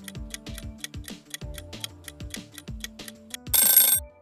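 Quiz countdown-timer music with a quick, even beat of ticks and low drum hits. Near the end comes a short, loud alarm-bell ring as the timer runs out.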